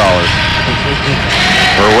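Steady ice-rink arena background noise, a continuous rumble and hiss, with a brighter scrape-like hiss about a second and a half in. A man's laugh trails off at the very start, and speech begins again near the end.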